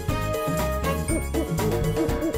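Music with a bass line, a steady beat and high bell-like notes.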